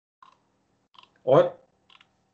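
A man's voice says a single short word about a second in. Otherwise there is near-silent room tone with a few faint short clicks.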